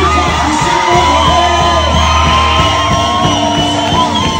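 Live gospel worship music: a choir singing through a PA system over bass and a steady drum beat, with a long held sung note in the middle.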